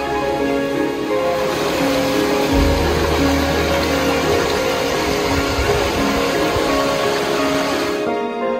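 Soft background music of held, sustained notes. From about a second and a half in, a steady rushing noise rises beneath it, and both cut off suddenly at the end.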